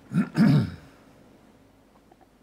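A person clearing their throat: two short, loud rasps in the first second, then quiet room tone.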